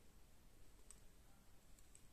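Near silence with a few faint clicks of metal double-pointed knitting needles touching as stitches are knitted.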